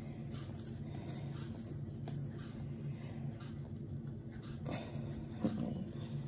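A steady low hum, with faint soft rustling and pressing as hands roll a log of bread dough on a wooden board.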